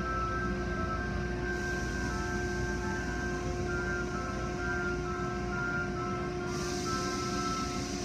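Automatic tunnel car wash heard from inside the car: a steady low rumble of the machinery with water spray hissing against the car, swelling about a second and a half in and louder again near the end. Music with sustained notes plays over it.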